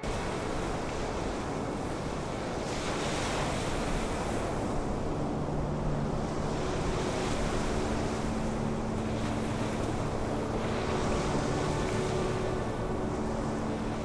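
Breaking ocean surf: a dense rush of waves that swells several times, with faint sustained music tones underneath.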